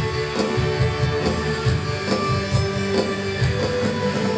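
Live band playing an instrumental passage, electric guitars over bass and drums with a steady beat.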